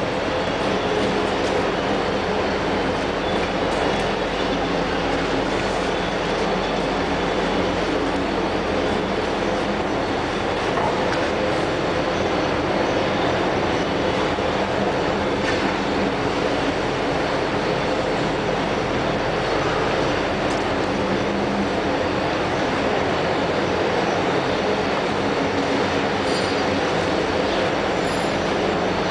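TOS OHO 50 gear shaper running: a loud, steady mechanical noise of its gearing and drive, with a low hum underneath.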